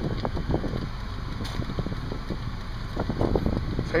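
Low rumble inside a car cabin, with wind buffeting the microphone and scattered small irregular clicks.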